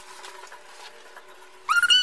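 Faint steady hum in a cable car gondola cabin, then near the end a child's short, high-pitched squeal rising in pitch.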